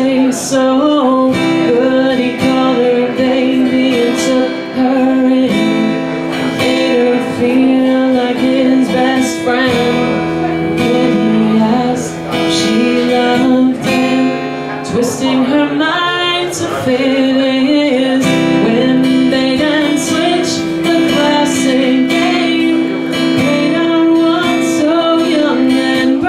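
A woman singing while strumming an acoustic guitar, her voice moving in phrases over steady, sustained chords.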